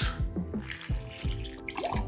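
Freshly squeezed lemon juice pouring in a thin stream from a hand citrus press into a metal jigger, then from the jigger into a glass. Background music with a steady beat plays throughout.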